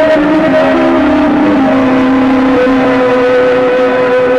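Loud noise-music drone from a chain of guitar effects pedals: several held tones over a dense hiss, with the pitches stepping down a few times as the knobs are turned.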